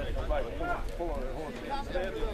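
Voices talking at a lower level than the public-address commentary, over a steady low rumble.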